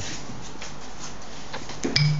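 Steady background hiss with faint handling sounds at a kitchen counter, then two short sharp clicks near the end.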